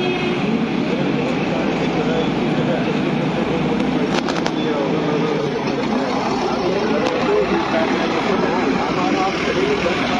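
Indistinct murmur of many voices talking at once, over the running of vehicle engines in the street.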